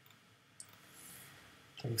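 A single light click about half a second in, over faint room tone, from computer input during CAD work.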